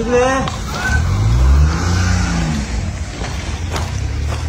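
Motor vehicle engine running, its note rising and then falling back between about one and three seconds in, over a steady low hum.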